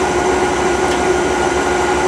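Home-built nine-coil generator rig running steadily with no speech over it: an even whirring noise with a constant hum.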